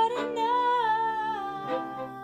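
A woman singing one long wordless note that glides slowly downward, accompanied by violin and cello; the cello changes note near the end.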